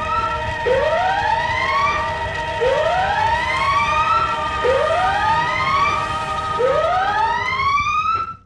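Fire alarm sounding a whoop evacuation tone: a rising sweep repeated four times, about two seconds apart.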